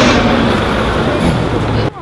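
Loud, steady city-street traffic noise with vehicles passing. It cuts off suddenly near the end.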